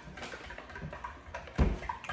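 A spoon stirring batter in a glass mixing bowl with faint taps and scrapes, then a dull, heavy thud about one and a half seconds in as a paper bag of flour is set down on the countertop.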